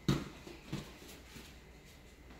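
Bare feet landing with a thud on a foam gymnastics mat, followed by two lighter footfalls.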